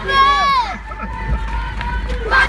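Children shouting as they run in a celebrating crowd: one loud high shout in the first half second, its pitch dropping at the end, then a thin held note, over the low rumble of running.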